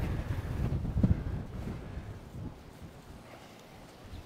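Wind buffeting the phone's microphone in a low, uneven rumble, loudest in the first two seconds and then easing off.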